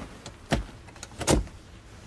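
Car doors on arrival: a click about half a second in, then a louder double clunk a little after a second in, over a faint low rumble.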